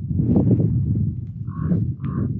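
Wind buffeting the camera microphone, heard as a loud, choppy low rumble, with a few short higher-pitched sounds in the second half.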